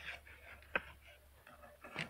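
Faint handling sounds: one light click about three-quarters of a second in and another near the end, over a low background hum.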